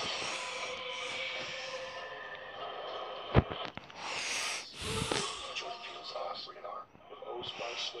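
Television audio from a clip or promo heard through the set's speakers: held tones at first, a sharp hit just after three seconds, which is the loudest sound, then whooshing swells around four to five seconds in.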